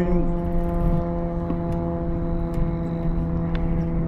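Low wind rumble with a steady droning hum of several held tones underneath, unchanging throughout, and a few faint ticks.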